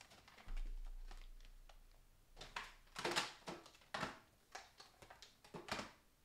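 Rummaging through craft supplies: a scattering of short clicks, taps and knocks as things are moved about on a counter. A low thud about half a second in fades away over a couple of seconds.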